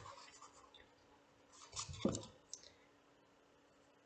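Faint graphite pencil strokes scratching on sketchbook paper, with a brief cluster of louder strokes and a soft knock about two seconds in.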